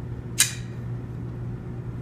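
A single sharp click from the banner stand's shock-corded pole or metal base being handled, with a brief ring after it, over a steady low hum.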